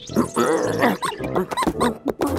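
Cartoon bunny's wordless voice: a string of short squeaky calls and grunts that quickly rise and fall in pitch, over background music.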